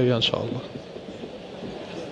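A man's voice trails off in the first half-second, then the steady murmur and hubbub of a crowded exhibition hall.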